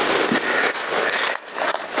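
Plastic bag being handled, rustling and crackling irregularly with small clicks.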